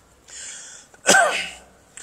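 A man draws an audible breath, then about a second in gives one loud, explosive sneeze that falls in pitch.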